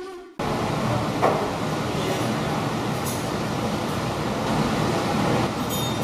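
Music cuts off abruptly, then steady background noise, an even rumble and hiss, with a short knock about a second in.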